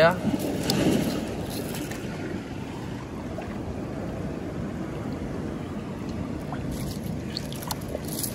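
Steady wash of shallow seawater moving over rocks and shells, with a few faint clicks of shells knocking together near the end as a handful is scooped up.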